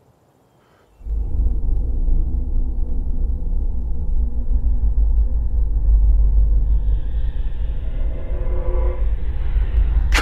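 Deep, loud film sound-effect rumble of a man straining his power to move a distant satellite dish, starting suddenly about a second in and holding steady, with a higher, harsher strained tone joining about seven seconds in.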